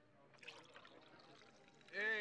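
Champagne being poured into a glass coupe, heard faintly as a liquid pour filling the glass with fizz, with a few light clicks about half a second in.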